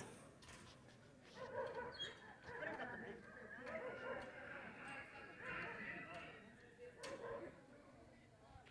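Faint, distant voices of several people talking or calling out, with a single sharp click about seven seconds in.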